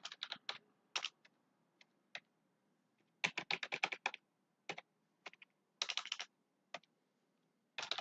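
Computer keyboard typing, sharp separate key clicks in short runs: a few keystrokes at the start, a quick run of about ten a little past the middle while a phone number is entered, and a few more later.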